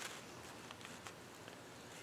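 Quiet workshop room tone with a few faint ticks.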